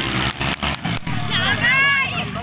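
Spectators shouting and calling out over the steady drone of racing motorcycle engines. The shouting gets louder and higher in the second half.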